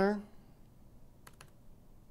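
Computer keyboard keystrokes while typing code: faint, with a quick cluster of about three taps about a second and a quarter in, just after the end of a spoken word.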